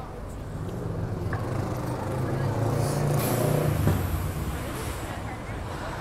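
A motor vehicle passes close by on the street. Its engine hum grows from about a second in, is loudest around three to four seconds in, then fades, with a brief high hiss about three seconds in.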